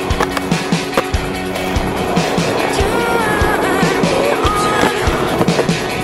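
Skateboard wheels rolling on concrete with sharp clacks of the board popping and striking a ledge, mixed with rock music that has a steady drum beat.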